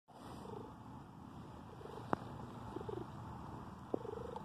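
Domestic cat purring steadily while being stroked, with two sharp clicks, one about two seconds in and one near the end.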